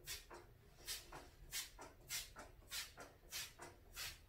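Hand-pumped trigger spray bottle squirting a Dawn-and-vinegar cleaner onto a glass shower door: a quick series of short hissing sprays, the stronger ones about every half second.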